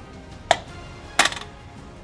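Plastic pop-up dice dome of a board game being pressed: two sharp clicks about 0.7 s apart, the second followed by a brief rattle of the die bouncing inside the dome.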